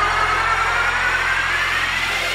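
Electronic dance music with the beat dropped out: a whooshing sweep rising steadily in pitch over a steady low bass, a build-up riser in the DJ mix.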